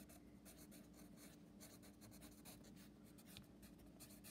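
Faint scratching of a pencil writing on a paper workbook page, in short irregular strokes.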